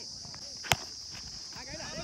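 Steady, high-pitched drone of insects chirring, with a single sharp click about two-thirds of a second in.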